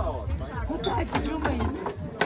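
Foosball table in play, with sharp clacks of the ball, figures and rods, over background music and people's voices.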